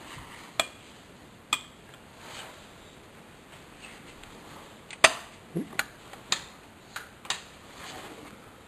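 A series of about eight sharp clicks and knocks at uneven intervals, two in the first two seconds and a tighter cluster from about five seconds in, where the loudest one falls.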